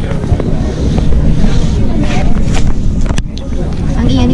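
Loud low rumbling noise on the camera microphone, with faint voices underneath. A single sharp click comes about three seconds in.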